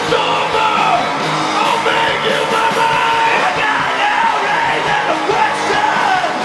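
Live rock band playing loud: electric guitars, bass and drums, with steady drum hits and shouted vocals over the top.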